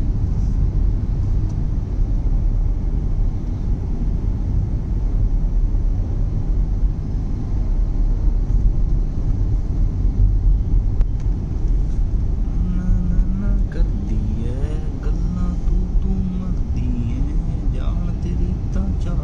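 Steady low rumble of city road traffic: car, motorbike and auto-rickshaw engines and tyre noise heard from within the traffic. A person's voice comes in over it about two-thirds of the way through.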